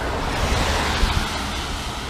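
A car passing close by on the road: a rushing tyre-and-road noise that swells and then eases off, with wind buffeting the microphone underneath.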